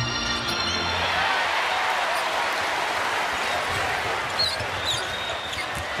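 Arena crowd noise at a basketball game, the home crowd cheering a three-pointer, with a few seconds of music mixed in at the start.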